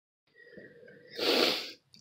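One short, sharp burst of breath close to the microphone, about half a second long, a little past the middle.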